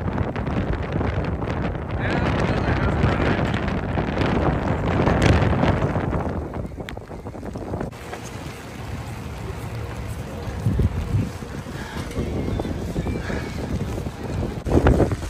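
Wind buffeting the microphone in a rain shower: a rough rushing noise, loudest in the first six seconds and easing off after about eight seconds.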